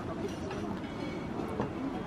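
Steady background murmur of many diners' voices, too blurred to make out, with a few light clicks of tableware, the clearest about one and a half seconds in.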